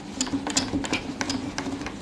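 Whiteboard duster wiped quickly back and forth across a whiteboard: a rapid, irregular run of short scrubbing and scraping strokes.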